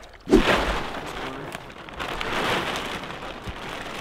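Blue plastic tarp crinkling and rustling continuously as it is handled, starting about a third of a second in and swelling again in the middle.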